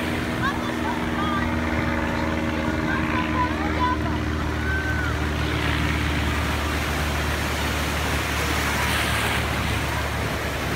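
Ocean surf breaking and washing in the shallows, with the scattered distant voices of many bathers. A steady low engine hum runs beneath, its upper tones fading out a little past the middle.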